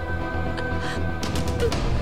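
Dramatic background score: steady held tones over a low rumble, with a few faint clicks a little past midway.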